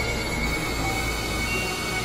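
Dense, layered experimental music mix with a steady low drone. A high, shrill held tone comes in at the start and holds steady.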